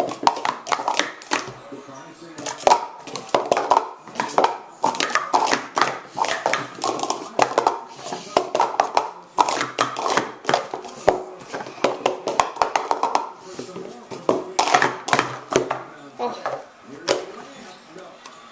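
Rapid, irregular clacking of plastic Speed Stacks cups as they are up-stacked and down-stacked into pyramids on a mat in a timed sport-stacking run. The clatter thins out near the end as the run finishes.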